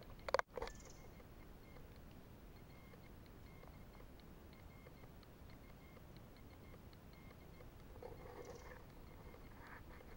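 Quiet forest ambience, mostly a faint steady hiss, with a brief loud rustle or knock just after the start. A weak short sound comes about eight seconds in.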